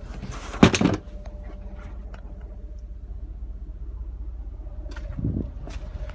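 Cadillac Escalade third-row seat being handled for removal: a loud clunk a little over half a second in and a softer thump about five seconds in, over a steady low rumble.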